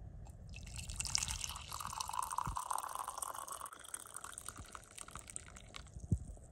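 Coffee poured from a French press into a mug: a stream of liquid splashing and filling the mug, starting about half a second in and tapering off after about four seconds.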